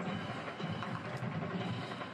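Football stadium ambience as heard on a TV broadcast: a steady crowd noise with music and drums playing underneath.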